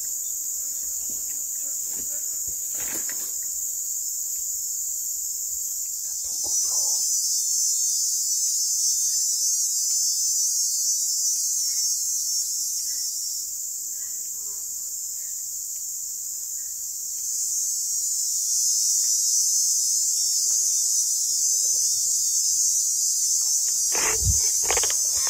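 Steady, high-pitched chorus of forest insects. It grows louder about six seconds in, eases off in the middle, and swells again near the end.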